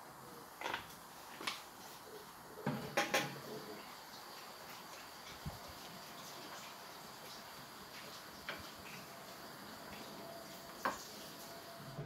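Quiet room with a few scattered knocks and clinks of small household objects being handled, a cluster of them about three seconds in and a single one near the end.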